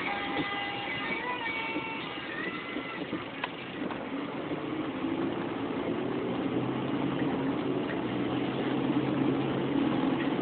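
Car cabin noise while driving: the engine and road rumble steadily after a piece of guitar music fades out in the first two seconds or so. A steady low engine hum comes in about halfway through.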